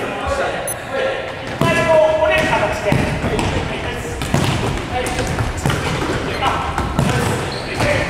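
Futsal balls being kicked and trapped on a wooden gym floor: repeated sharp thuds of passes, echoing in a large sports hall, with players' voices calling out about two seconds in.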